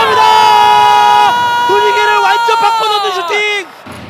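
Football TV commentator's long, drawn-out excited shout as a shot is taken on goal, held high for about three seconds and falling away before cutting off near the end.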